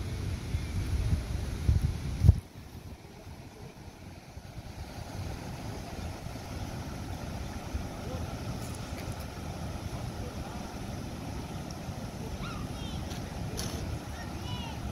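Wind buffeting the microphone with a low rumble, ending abruptly with a sharp bump a little over two seconds in. After that there is a steady, even rushing that slowly grows, and a few faint bird chirps near the end.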